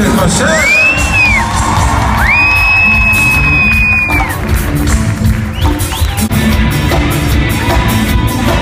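Live band playing, with drum kit and percussion, while the audience cheers and whistles: a short piercing whistle about half a second in and a longer one from about two to four seconds.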